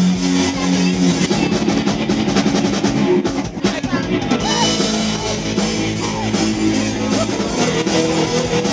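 Live rock-style worship band playing: drum kit, electric guitar and bass through amplifiers. A held chord gives way to busier drumming about a second in.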